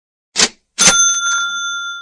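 A cash-register "ka-ching" sound effect: a short burst of noise, then a sharp strike and a bell ringing for about a second.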